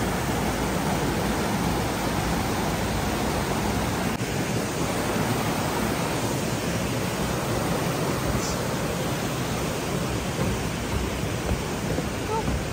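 Stream water rushing over rocks below a footbridge: a steady, even rush.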